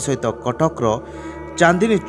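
Male narrator speaking in Odia in a steady news-report delivery, with a drawn-out falling vowel near the end.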